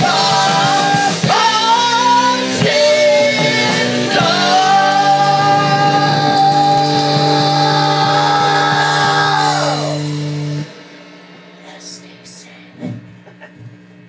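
A live rock band with drum kit, electric guitar, saxophone and a shouted lead vocal plays the end of a song. It closes on a long held note of about five seconds, then the music cuts off suddenly, leaving only faint scattered sounds.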